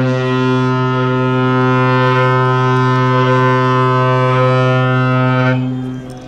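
The horn of the cruise ship Asuka II sounding one long, low, steady blast for about five and a half seconds before dying away: its signal on leaving port.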